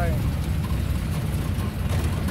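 A jeep driving on a bumpy dirt road, heard from inside the cabin: a steady low rumble of engine and road noise.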